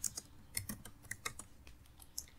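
Faint typing on a computer keyboard: about a dozen light, uneven keystrokes in two seconds.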